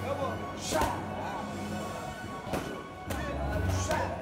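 Background music with a steady low beat, over which three sharp slaps of kicks and knees landing on Thai pads are heard: one near the start, one past the middle and one at the end.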